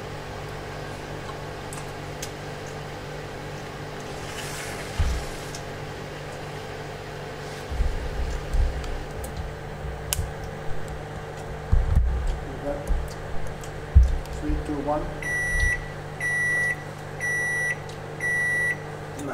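Samsung microwave oven running with a steady hum, then sounding its end-of-cooking beep three times near the end: short, high tones about half a second long, marking that the heating cycle has finished. Several low thumps come through in the middle.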